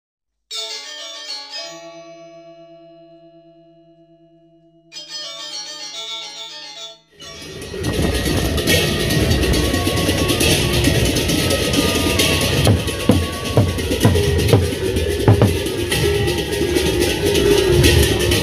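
A short intro of pitched musical notes, two bursts with held tones fading between them, then about seven seconds in a Sasak gendang beleq ensemble starts: large double-headed drums beating under a continuous crash of cymbals.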